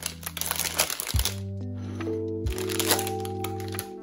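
Paper wrapper of a chocolate bar crinkling as it is peeled off, in two spells, in the first second or so and again past the halfway point, over background music.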